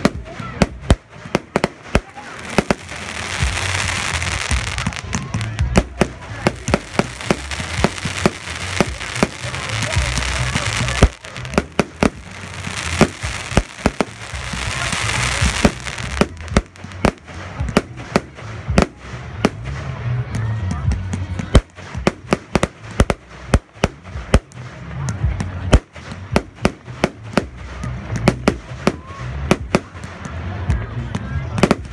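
Aerial fireworks bursting in quick succession: many sharp bangs throughout, with several stretches of dense hissing noise lasting a few seconds each.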